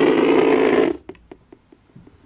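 Small DC hobby motor buzzing loudly for about a second, then stopping abruptly, followed by a few faint clicks as the mechanism settles.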